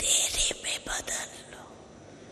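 An elderly woman's whispered, breathy voice close to the microphones: a few hissing syllables over the first second or so, then only faint room tone.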